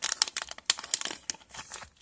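Small clear plastic zip bag crinkling in the hands as it is opened and a sheet of nail transfer foil is pulled out: a run of irregular crackles that dies away near the end.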